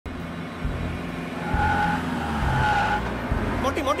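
Car engines rumbling at speed, with two short steady tones about a second apart in the middle. A man starts shouting near the end.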